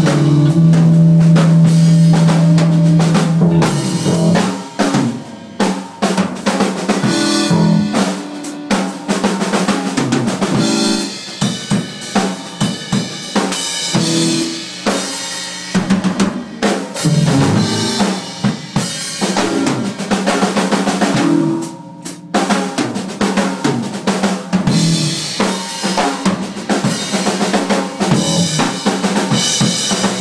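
Live rock drum kit played hard in a busy, fill-heavy passage, kick and snare to the fore. A held low electric guitar note rings through the first four seconds before the drums take over, with a brief break about two-thirds of the way through.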